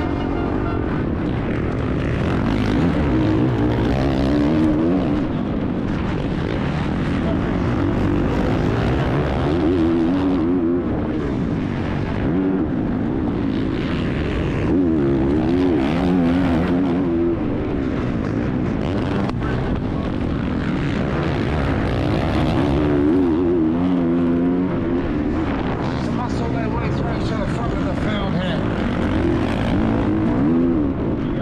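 Onboard sound of a Honda CRF450R motocross bike's single-cylinder four-stroke engine at race pace, revving up and easing off again and again every few seconds as the rider works the throttle and gears, with a constant rush of wind and track noise behind it.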